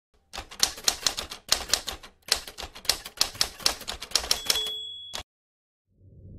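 Typewriter sound effect: a quick run of keystrokes, a brief pause partway through, then more keystrokes that end in a single bell ding, which cuts off suddenly.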